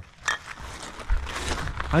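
A single short clink of glass beer bottles knocking together as they are handled, then a low, steady rumble of wind on the microphone at the water's edge.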